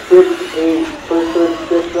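Mostly speech: a man's voice calling out numbers, over steady outdoor background noise.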